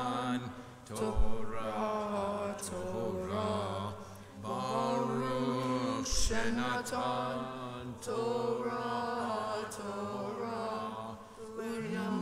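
A single voice chanting Hebrew in Torah cantillation, in long melodic phrases with brief pauses between them.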